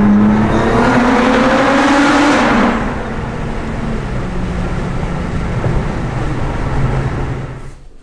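Nissan GT-R R35's twin-turbo V6 heard from inside the cabin, accelerating hard with a rising engine note for about two and a half seconds. It then eases off into a lower, steady drone at cruising speed, which fades near the end.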